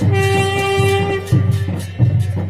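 Folk music played outdoors: a wind instrument holds a long steady note, breaking off briefly after about a second before sounding again, over repeating drum beats.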